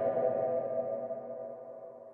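Intro sting for a logo animation: a ringing drone of several steady tones that slowly fades out.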